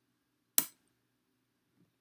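A single sharp click of a checker piece being set down, about half a second in, most likely the captured white piece put down off the board.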